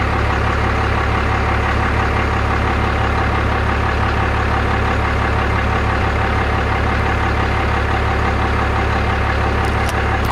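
A vehicle engine idling steadily, with a strong, unchanging low rumble.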